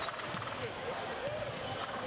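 Faint basketball gym ambience: a ball bouncing on the court under distant voices.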